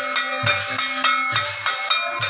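Folk dance music: a small keyboard holds a changing melody over bright clashing cymbals and a low, regular thudding beat.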